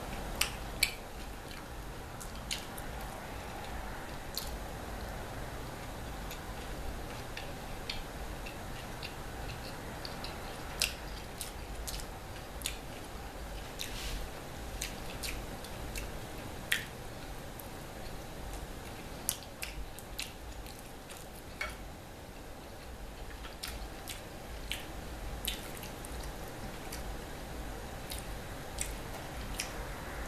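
Close-miked eating of pizza: chewing with scattered wet mouth clicks and smacks, a few of them sharper and louder, over a faint steady background hum.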